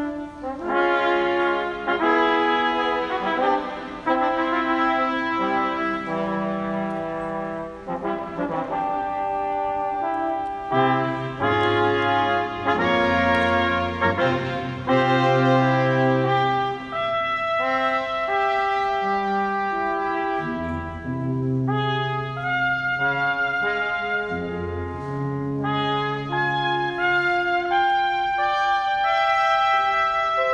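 A brass quartet of trumpet, trombones and a low brass horn plays a fanfare in sustained chords that change every second or so, with deep bass notes joining about a third of the way in.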